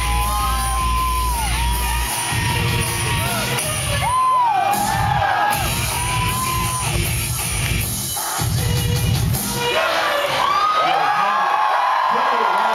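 Loud live noise-pop song: a heavy beat in stop-start bursts under held, bending high tones and singing. About ten seconds in the beat drops out and the crowd cheers and whoops.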